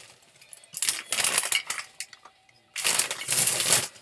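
Packaging rustling and crinkling as a product is handled and unwrapped, in two stretches: about a second in and again near the end.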